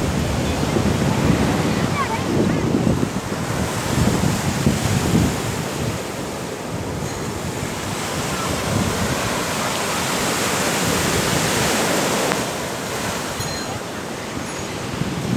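Sea surf breaking and washing up a sandy shore, a steady rush that swells past the middle, with wind buffeting the microphone in gusts.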